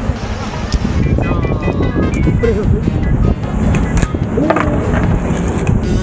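A fingerboard snapped and landing on a stone ledge: a few short, sharp clacks of nollie flip attempts that fail. Music plays underneath.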